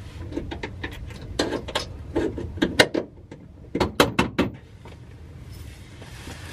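Hand tools clicking and knocking on metal under a car while the transmission crossmember bolts are worked loose. The clicks are irregular and sharp, with a few louder knocks in the middle, and it goes quieter near the end.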